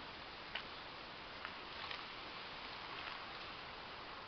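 Faint handling sounds of hands setting a seedling into garden soil: a few soft clicks and rustles over a steady background hiss.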